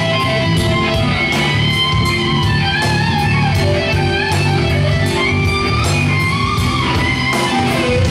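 Live band playing loud rock music with a steady beat, an electric guitar carrying the lead line.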